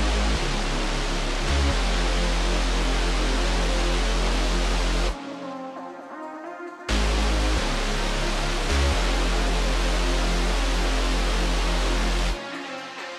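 Electronic dance music from a DJ set: deep sustained bass notes under a loud wash of noise. The bass and much of the high end drop out for about two seconds midway, then the same phrase comes back.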